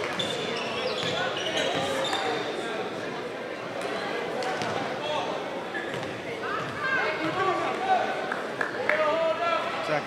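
Basketball gym during a free throw: a basketball bouncing on the hardwood floor, with voices of players and spectators in the hall.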